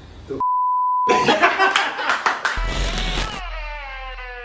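A censor bleep: a single steady one-pitch tone of just under a second, near the start. It is followed by a couple of seconds of loud, noisy sound with voices and sharp clicks, and then a short piece of end music whose chord slides down in pitch.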